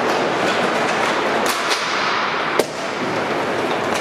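Inline hockey skate wheels rolling and clattering over plastic sport-court tiles in a large gym, with light stick clicks. A single sharp knock comes about two and a half seconds in.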